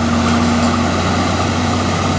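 Engine of a 6x6 military truck running steadily under load as it drives through deep mud, with a held engine tone over a low hum.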